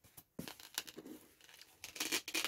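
Kraft card box being handled and its lid lifted open: faint, irregular scraping and rustling of cardboard with a few soft taps.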